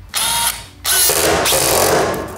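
Handheld DeWalt screw gun driving an ultra-low-profile roofing screw through a fixed metal clip into plywood. It runs in a short burst, stops briefly, then runs for about a second as the screw goes in.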